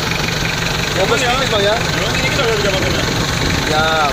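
Isuzu Panther's diesel engine idling steadily, heard close to the engine bay.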